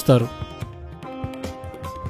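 Quiet instrumental background music with a few held notes; a narrating voice ends just at the start.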